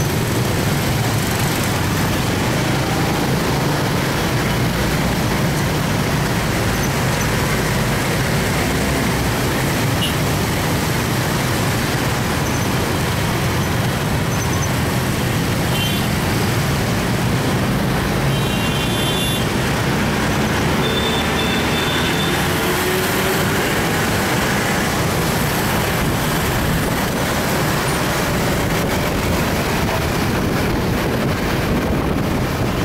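Steady din of heavy urban traffic, mostly motorcycles and cars, heard from within the traffic while moving along with it.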